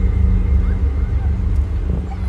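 Outdoor ambience dominated by a loud, uneven low rumble, with faint distant voices and a few faint short high chirps over it.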